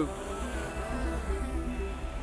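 Quadcopter drone's propellers buzzing steadily as it lifts off, several tones wavering together.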